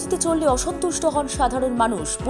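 A voice reading news narration over background music with steady held tones and a regular low beat.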